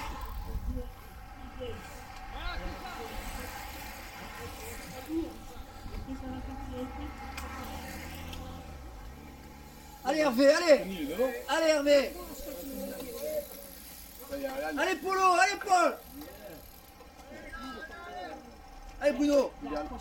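Spectators shouting encouragement to passing road-race cyclists, in two loud bouts about ten and fifteen seconds in and a shorter one near the end, over a faint outdoor background.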